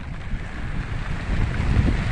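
Wind buffeting the microphone with an uneven low rumble, over the steady hiss of heavy rain falling.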